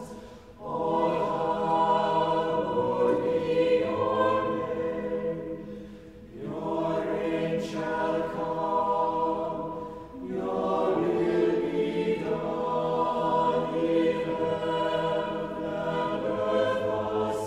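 Church choir singing sustained chords in several parts, in phrases broken by short breaths about six and ten seconds in.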